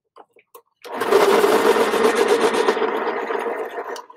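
Electric pencil sharpener running and grinding a pencil for about three seconds, starting about a second in after a few light clicks.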